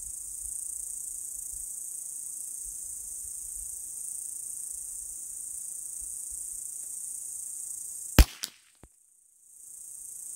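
Steady high-pitched insect buzz, then a single .22 rimfire rifle shot about eight seconds in: the cold-bore first shot. A short echo follows, and the insect buzz cuts out for about a second after the shot.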